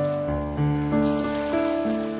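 Solo piano playing a slow, gentle line of single notes and arpeggios, a new note about every third of a second, over a soft hiss of ocean surf.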